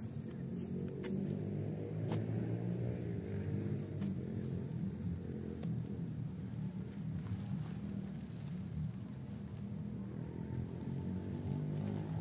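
A steady low engine rumble runs throughout, with a few faint clicks and rustles as a nylon tarp tent is handled and unpacked.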